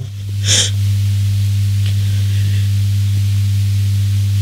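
A single sharp intake of breath, a gasp, about half a second in, over a steady low electrical hum that carries on through the rest.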